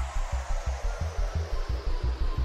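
Makina (Spanish hard techno) track in a DJ mix: fast pounding bass pulses, about six a second, under a hiss-like noise sweep that falls steadily in pitch.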